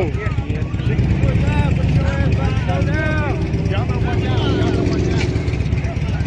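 Several voices shouting and calling out at some distance, one after another, over a steady low rumble.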